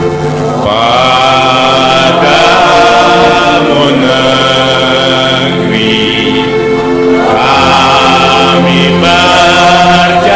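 A group of voices singing together in long held notes over instrumental accompaniment, the voices sliding up into each phrase with a short break in the middle.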